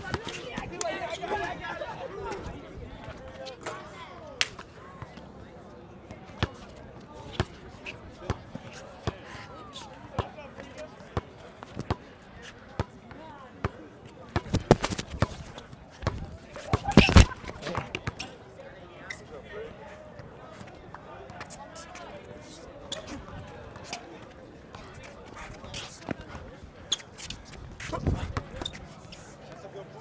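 Basketball dribbled on an outdoor hard court: repeated sharp bounces throughout, with louder thumps about 15 and 17 seconds in, over the murmur of spectators talking.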